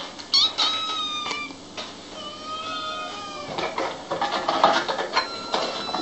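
Kittens meowing: a string of high-pitched mews, each about half a second to a second long, several of them overlapping.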